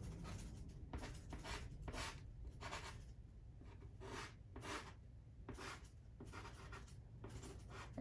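Soft pastel stick stroking across pastel paper: a run of faint, scratchy strokes, roughly one to two a second.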